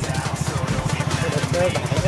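Motorcycle engine running at low speed on a muddy track, a rapid, even beat of exhaust pulses. A brief pitched sound comes over it about one and a half seconds in.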